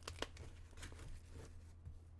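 Faint rustling and a few small sharp clicks as a goalie leg pad's fabric and a removable band are handled and pushed back into place, over a steady low hum.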